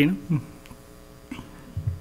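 Steady electrical mains hum on the sound system, with a short low thump near the end.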